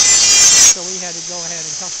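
Chicago Electric electric die grinder running free with a high whine that cuts off suddenly a little under a second in; a man talks over it and on after it stops.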